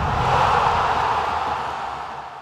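Logo-intro sound effect: a steady rushing whoosh that fades out near the end.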